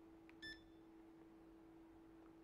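A single short electronic beep from an iRest hand massager's button panel as a button is pressed, about half a second in, just after a faint tap. A faint steady hum sits underneath.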